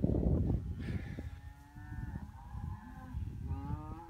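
A cow mooing: one long moo of about three seconds, starting about a second in and rising slightly in pitch near the end.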